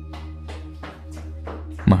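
Low, dark ambient music drone with held notes. Over it, a run of quick footsteps climbing stairs as short sharp taps, several a second.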